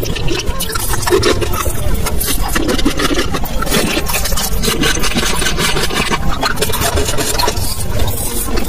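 Close-miked ASMR mouth sounds: a continuous dense crackle of wet clicks, lip smacks and sucking, including a round hard candy on a stick being sucked.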